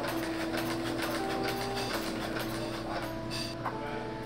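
Industrial post-bed sewing machine running, its needle stitching a panel onto a sneaker upper with a rapid, steady clatter.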